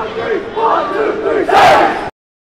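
A basketball team huddled together with cheering fans, many voices shouting over each other, with a louder group shout about one and a half seconds in.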